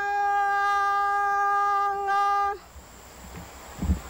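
Voices singing one long held note of a Palauan song, steady in pitch, which stops about two and a half seconds in. A short pause follows, with a brief low thump near the end.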